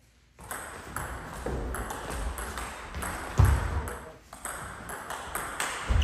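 Table tennis rally: the celluloid ball clicks sharply off the paddles and the table, two to three hits a second, starting about half a second in after a quiet start. A heavy low thud comes about midway, the loudest moment.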